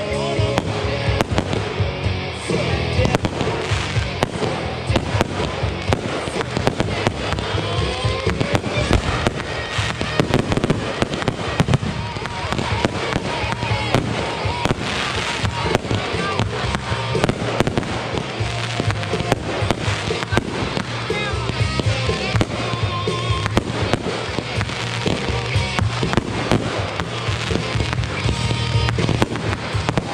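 Backyard consumer fireworks going off without a break: a rapid run of launches, bangs and crackling bursts.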